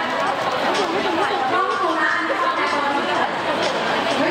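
Continuous speech with chatter from the people around.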